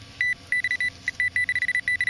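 Handheld metal-detecting pinpointer, likely a Garrett Pro-Pointer, beeping in a single high tone. The beeps come faster and faster until they are almost continuous near the end. The rising beep rate means the probe is closing in on a metal target in the middle of the dug soil plug.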